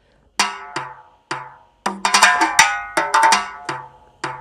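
A Latin pop percussion loop from GarageBand's Apple Loops library previewed on its own. It is struck percussion with short, ringing, pitched hits. It starts after a brief silence with a few spaced strokes, then a busier pattern from about two seconds in.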